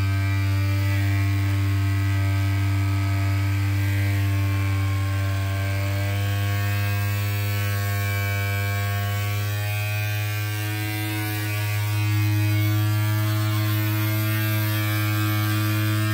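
Small DC motor of a toy magnet-driven flapper paddle boat running steadily, a buzzing hum with many overtones that wavers slightly in pitch. It is a bit noisy because it is running on a lithium-ion battery.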